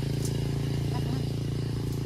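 A steady low mechanical drone, like an engine running at constant speed.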